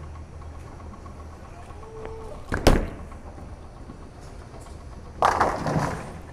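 Bowling ball (Storm Phaze AI) landing on the lane with a sharp thud, then hitting the pins in a clatter about two and a half seconds later, over the low steady hum of the bowling alley.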